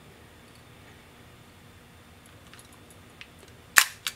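A single sharp metallic click near the end, after a few faint ticks, as fingers turn the small slow-speed/self-timer dial on an Ihagee Exakta VX IIb 35mm camera.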